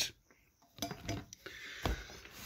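A few light clicks and knocks of handling as the paint sprayer's small metal strainer cup is put down, the sharpest knock near the end.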